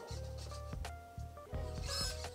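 Eilik desktop robot's small motors whirring as it swings its arms, under its short electronic beep tones. The motor runs smoothly.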